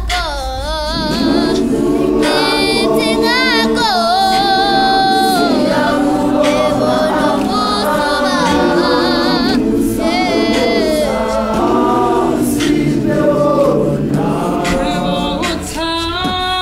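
A large gospel choir singing a cappella in full harmony, with a lead voice singing a wavering, vibrato-laden line above the massed voices.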